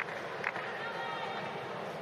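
Tennis shoes pounding and squeaking on a hard court as a player sprints forward, with a short sharp knock about half a second in, over a low steady crowd murmur.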